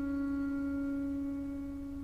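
Double bass played with the bow, holding one long high note that slowly fades toward the end.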